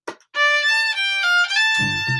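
Acoustic violin with a pickup, played through a Boss ME-80 with delay on, bowing a short melody of held notes that step up and down. Near the end a looped low plucked bass pattern comes back in underneath.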